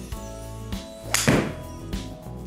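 A fairway wood strikes a golf ball off a hitting mat about a second in, one sharp, loud hit, over steady background music.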